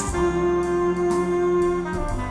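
Jazz recording playing through Ascendo System Zf3 hi-fi loudspeakers with a subwoofer, heard in the listening room: a long held horn note over bass, with cymbal shimmer above.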